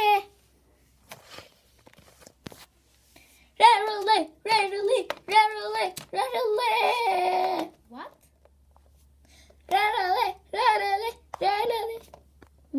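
A child's high-pitched voice chanting short, sing-song syllables in bursts, after a few seconds of near quiet broken only by faint clicks.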